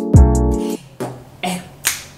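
A loud music sting, deep bass notes under a quick high ticking beat, cuts off just under a second in. Finger snaps then begin, about two a second, with a woman's voice calling "hey".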